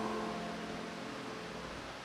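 A piano chord dies away over about a second, leaving a steady, faint background hiss until the next phrase.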